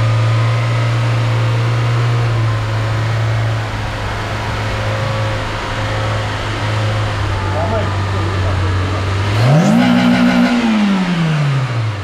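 A GTI's 16-valve petrol engine idling steadily. It is revved once about nine and a half seconds in: the pitch rises quickly, holds for about a second, then falls back toward idle.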